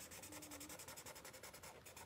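Faint scratchy rubbing of a black Sharpie permanent marker scrubbing back and forth on sketchbook paper as it fills in a solid black area, in quick even strokes.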